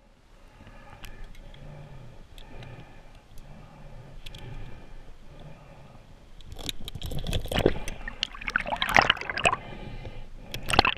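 Muffled underwater water noise, then from about two-thirds of the way in, loud, irregular splashing and knocking as a speared carp thrashes on the spear shaft in the diver's hands, heard through an underwater camera housing.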